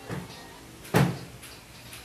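Two dull knocks: a soft one at the start and a louder, sharper one about a second in.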